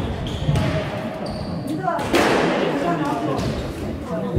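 Squash ball being served and struck in a rally: sharp hits that ring in the enclosed court, the loudest about two seconds in. People talk in the background.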